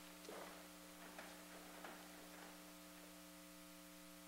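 Near silence with a steady electrical mains hum, and about four faint knocks in the first two and a half seconds as people rise from their chairs.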